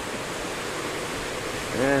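Steady noise of strong tropical-storm wind.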